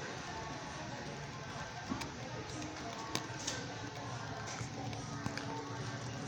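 Store background music playing under a murmur of shoppers' voices and the hum of a large store, with a couple of sharp taps about two and three seconds in.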